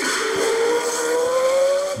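A man's drawn-out vocal sound of hesitation while he searches for a word: one held note, slowly rising in pitch.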